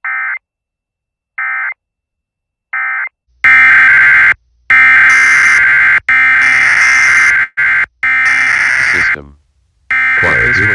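Emergency Alert System data tones: three short screeching bursts about a second and a half apart, the pattern of an alert's end-of-message code. From about three and a half seconds comes a louder, longer run of alert tones broken by brief gaps, which stops shortly before the end.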